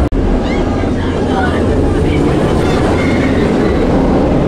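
Nemesis Reborn's inverted steel roller coaster train running along its track as a steady rumble, with people's voices over it. The sound drops out for an instant just after the start.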